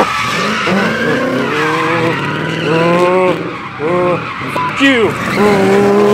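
A car's engine held at high revs while its tyres screech, spinning donuts in tyre smoke, with people shouting around it.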